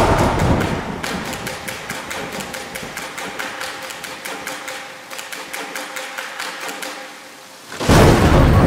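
Trailer sound design: a fast, even ticking of about four to five sharp clicks a second over a faint held musical tone, slowly fading away, cut off by a loud hit at the very end.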